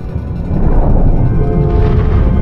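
Film score music over a heavy low rumble, with sustained held notes coming in about a second and a half in.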